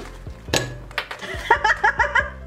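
A few sharp knocks of a hand striking the plastic plunger cap of a ramune-style marble-soda bottle, trying to force the glass marble seal down into the drink. The first and loudest knock comes about half a second in. The marble stays stuck, so the bottle is not yet opened.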